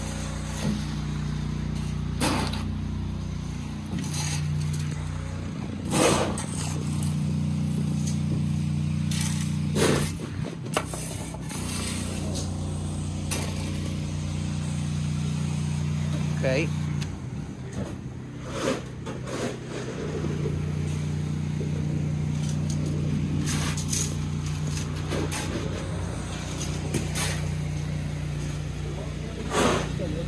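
Small petrol engine of a vibrating plate compactor running steadily, its level dipping a few times, with short scrapes and crunches of a shovel working gravel.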